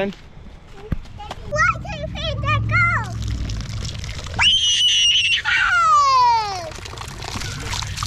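Push-button playground water tap running: water starts pouring from the spout about three seconds in and splashes onto the drain plate below. A small child squeals over it, a high held cry and then one sliding down in pitch.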